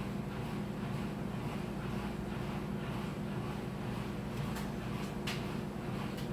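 A steady low hum throughout, with a couple of faint short clicks in the second half.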